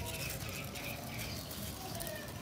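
Faint rustling of eggplant leaves and grass as a hand takes hold of a fruit on the plant, over quiet garden background.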